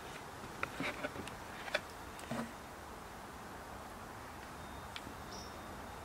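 A few faint clicks and taps of a metal screwdriver and screw against a hard plastic lid in the first two seconds or so, then a faint steady background hiss with a single small tick.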